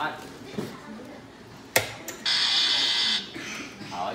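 A hand slaps a push-button timer box once, sharply, and an electronic buzzer then sounds a steady high tone for about a second, marking the end of the timed run.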